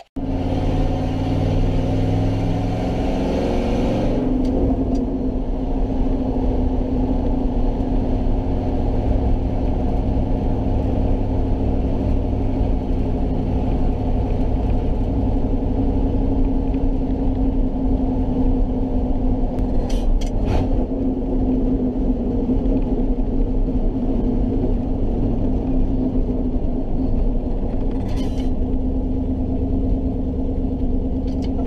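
Old pickup truck's engine running steadily, heard from inside the cab while driving, with a few brief clicks or rattles later on.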